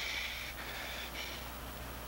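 A quiet pause in the speech: a faint steady low hum and hiss on the soundtrack, with a few faint soft sounds.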